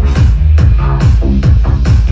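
Electronic dance music with a heavy kick drum about twice a second, played loud through PA loudspeakers driven by a PCM 20 power amplifier in a listening test.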